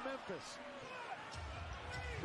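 NBA game broadcast sound: a basketball being dribbled on the court under a low arena crowd rumble, with a commentator talking faintly.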